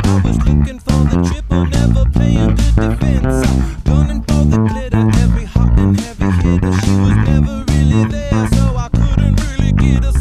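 Electric bass guitar plucked with the fingers, playing a busy funk line of quickly changing low notes over the band's recording, with drums keeping a steady beat.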